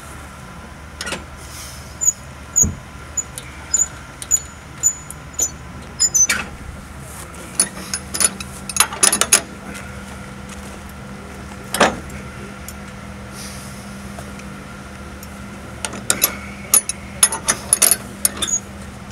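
Scattered metallic clicks and knocks from a cemetery worker handling the fittings of a casket lowering device and burial vault by hand. A steady low hum joins about seven seconds in.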